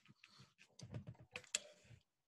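Faint tapping on a computer keyboard: a quick, irregular run of key clicks.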